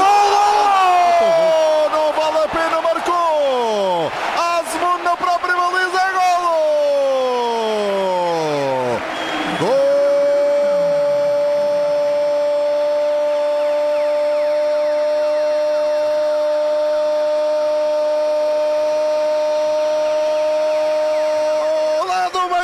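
Radio football commentator shouting excitedly, his voice sweeping up and down in pitch for about ten seconds, then breaking into one long held goal cry at a single pitch that lasts about twelve seconds, announcing a goal.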